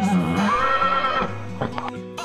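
A horse whinnies once, for about a second, over background rock music.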